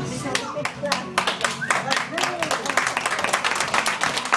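A small group clapping hands in quick, uneven claps, with children's voices chattering over the clapping.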